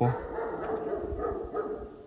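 A dog barking faintly.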